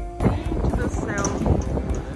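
Background music stops just after the start and gives way to outdoor ambience: wind buffeting the microphone over the chatter of a crowd of passers-by.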